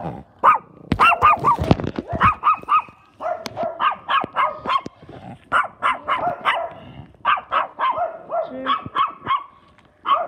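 A small dog barking over and over: short, high-pitched barks in quick runs of about three a second, broken by short pauses.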